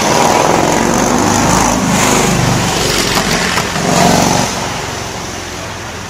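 A loud motor vehicle engine going by, swelling twice and then fading away near the end.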